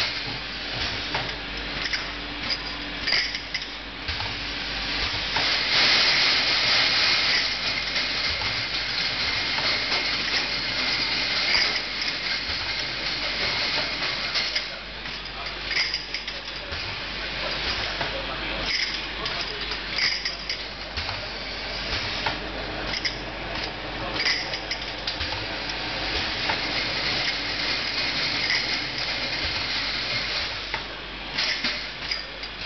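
Pneumatic volumetric piston filler running on a jar-filling line: short sharp hisses of compressed air from its valves every few seconds as it cycles each dose, over steady machine and conveyor noise, with a longer spell of hissing a few seconds in.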